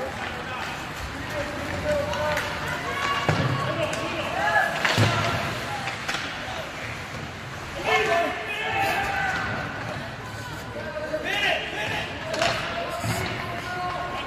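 Ice hockey game in an echoing indoor rink: voices calling and shouting across the ice. A couple of sharp knocks from the play land about three and five seconds in.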